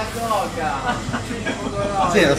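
Indistinct chatter of voices in a busy room, with no one voice standing out.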